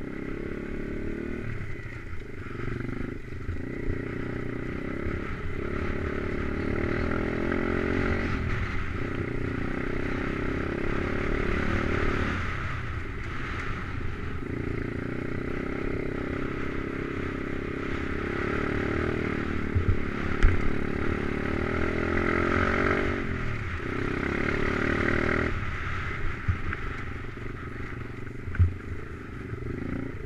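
Stomp pit bike's small single-cylinder four-stroke engine running under throttle as it is ridden over rough dirt and grass, the revs dropping away and picking up again several times. There are a couple of sharp knocks, about two-thirds of the way through and near the end.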